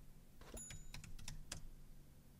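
Faint typing on a computer keyboard: a scattered, irregular run of keystrokes.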